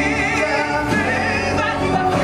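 Male musical-theatre voices, amplified through headset microphones, holding a sung note with vibrato over instrumental accompaniment. About a second in the held note ends and a new sung phrase begins.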